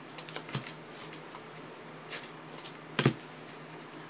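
Trading cards being handled and set down on a tabletop: a few light clicks in the first second, then one sharper, louder click about three seconds in.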